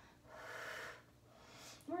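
A woman breathing with effort during a pilates bridge: one audible breath lasting under a second, then a fainter breath just before she speaks again.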